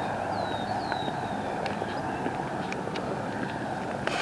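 Steady, even rumble of distant engine noise, with a few faint high falling chirps about half a second to a second and a half in.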